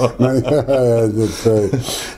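A man's voice speaking close to a handheld recorder, with rubbing, scraping noise from the recorder or microphone being handled.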